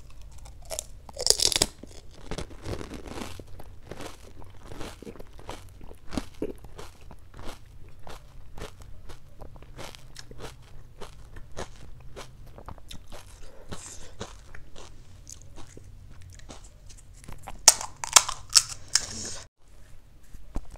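Close-miked crunching of a pani puri (golgappa), a hollow crisp fried shell filled with green spiced water, taken whole in one mouthful: a loud crunch about a second in, then steady wet chewing with many small crackles. Near the end comes a burst of sharper, louder cracks as the thin shell of another puri is broken open.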